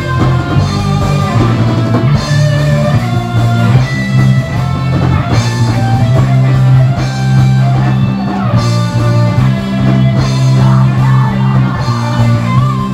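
Rock band playing live: two electric guitars and a bass guitar over a drum kit, with a repeating low riff and lead notes gliding above it.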